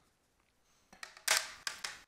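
Handling noise of a Blu-ray disc being worked free of a steelbook case's tight centre hub: a short run of scraping, clicking rustles starting about a second in.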